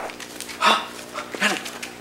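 A dog barking twice, short barks about a second apart.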